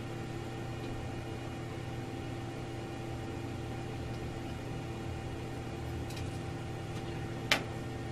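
Steady machine hum with several held tones, and one sharp click near the end.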